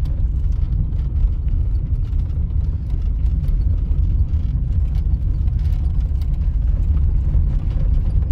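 Cabin noise of a Lada Samara creeping slowly downhill on a rough gravel track: a steady low rumble from the engine and tyres, with scattered faint clicks and rattles.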